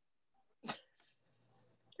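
Near silence broken once, a little under a second in, by a single short, sharp sound.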